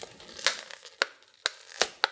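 Toy packaging, a printed cardboard card with its plastic blister, being pulled apart by hand: four sharp cracks and snaps about half a second apart over light rustling.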